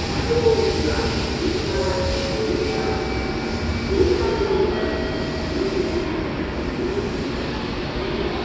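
JR Kyushu 885 series electric express train pulling out of a covered station platform and running away into the distance, its rumble easing a little in the second half, with a few short steady tones that step in pitch. Voices mix with it.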